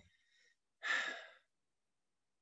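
A person's single breathy exhale, a sigh, heard through a video-call microphone, lasting about half a second about a second in.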